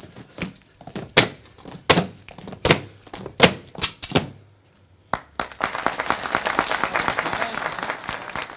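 Sharp slapping strikes of Cretan dancers in the pentozali, about six loud hits at uneven spacing, then a short pause and two last hits. Applause from the audience breaks out about five and a half seconds in.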